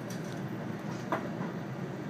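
Cabin running noise of a JR 521 series electric multiple unit on the move: a steady rumble from wheels and rails, with one sharp click about halfway through.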